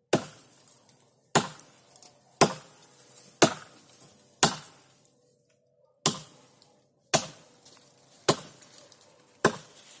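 Axe chopping into the trunk of a tree being felled: nine sharp blows about a second apart, with a short break midway.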